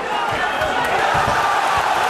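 Arena crowd noise: a steady din of many voices, with a few dull low thumps.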